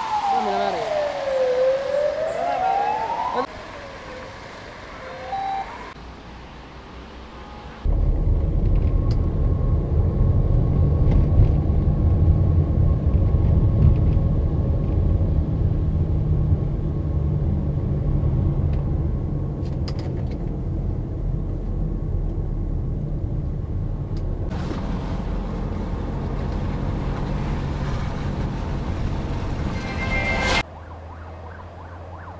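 An emergency-vehicle siren wailing, its pitch falling and then rising again, fading out within the first six seconds. From about eight seconds in, a loud, steady low rumble takes over and runs on, easing slightly partway through.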